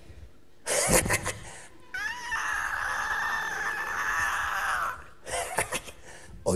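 A long, high, cat-like wail that rises sharply at its start and then holds for about three seconds. It sits between short, harsh noisy bursts, one about a second in and another near the end.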